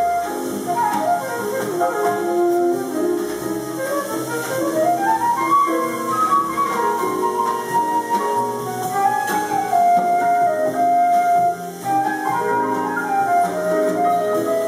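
Concert flute playing a melody live, with a quick rising run about a third of the way in and longer held notes later, over a lower chordal accompaniment.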